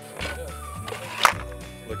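Background music with a steady bass line and held tones, with one sharp percussive hit a little past a second in.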